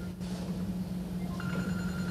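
A steady low electrical hum, with a faint high steady tone coming in about one and a half seconds in, in a pause between spoken phrases on a microphone and sound system.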